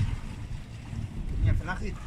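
Low, uneven rumble of a fishing boat on the water, with wind buffeting the microphone. A voice speaks faintly near the end.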